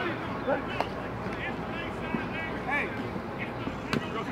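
Distant shouting voices across an open practice field over steady background noise, with two sharp slaps, the louder near the end as a football smacks into a receiver's hands.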